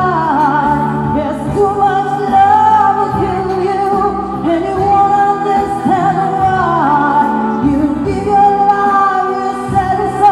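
A man singing into a handheld microphone over accompanying music, holding long notes with vibrato.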